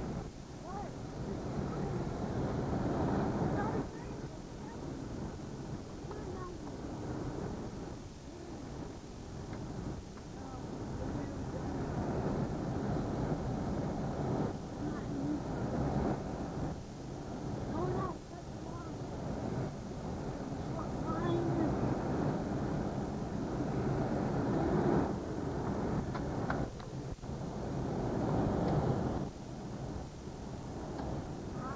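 Road noise inside a vehicle driving on a dirt road: a continuous rumble of engine and tyres that swells and eases with the road.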